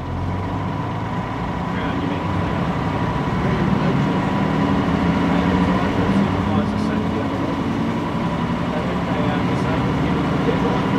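A 1980s Melbourne MK II bus's diesel engine running steadily, with a thin high whine over it, growing louder over the first few seconds.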